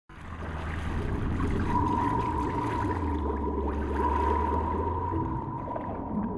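Underwater-style intro sound effect: a low rumble with water noise and scattered small pops, fading in at the start, with a steady high tone joining about two seconds in.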